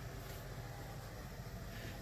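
Chevrolet 454 big-block V8 idling steadily, heard faintly under the open hood; the owner suspects a small exhaust leak.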